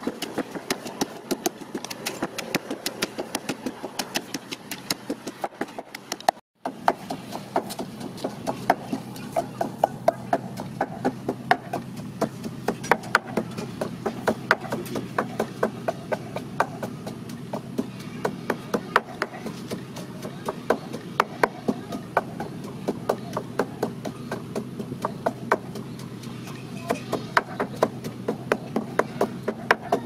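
Wooden pestle pounding lemongrass, herbs, garlic and chillies in a mortar: a steady rhythm of dull knocks, about three strokes a second, with one very brief break about six seconds in.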